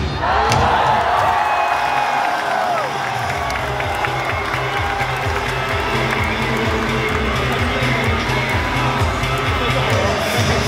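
Stadium cheer music with a steady bass beat, about two beats a second, played loudly for the cheerleaders' dance. The crowd shouts and cheers over it in the first few seconds.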